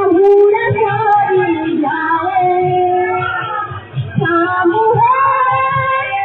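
A women's group singing a Sambalpuri devotional kirtan in unison, the melody held and bending in long sung lines over a regular low drum beat. The singing drops away briefly about four seconds in, then resumes.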